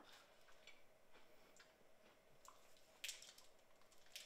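Near silence with sparse faint clicks and mouth noises, one sharper click about three seconds in: a person quietly eating candy.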